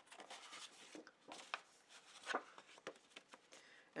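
Faint, scattered rustles and brushes of sheets of scrapbook paper being handled and slid across a tabletop.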